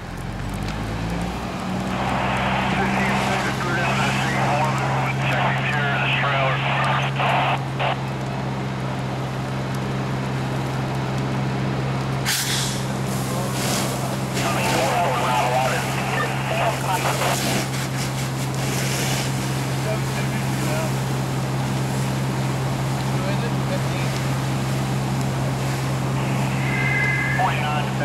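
Fire engine running at raised throttle to pump the hose line, a steady deep hum that climbs in the first second or two and then holds, with the burning car and the hose stream adding rough hissing noise on top. A single sharp pop comes about twelve seconds in.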